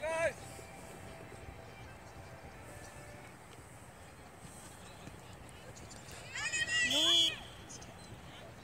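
Faint, steady open-air background on a sports field, then a loud shout from a person about six seconds in that lasts about a second.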